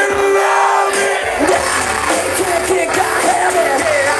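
Live rock band playing loud through an outdoor festival PA, heard from within the crowd, with vocals over the music. A held note opens, then the bass and beat come in about a second in.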